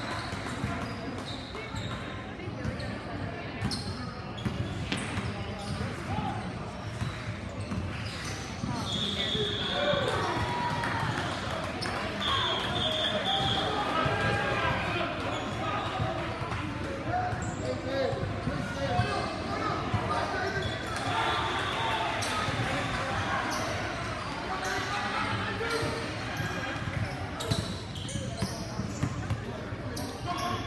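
A basketball bouncing and dribbling on a gym floor, with players and spectators calling out across a large gym. A referee's whistle sounds twice, briefly, about nine and twelve seconds in.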